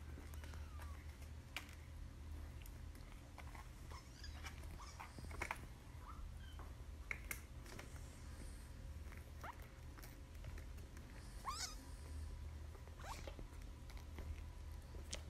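A small kitten making a few short, high, faint mews while it plays, one rising sharply about eleven seconds in. Light taps and scuffs of its play run throughout.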